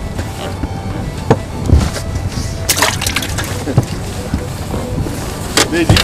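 Wind rumbling on the microphone on an open boat deck, with several sharp knocks and rustles of the anglers moving and handling rods.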